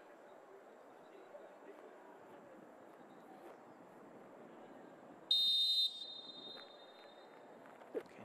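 Referee's whistle: one short, shrill blast a little over five seconds in, signalling the penalty taker to shoot. Faint background ambience runs underneath.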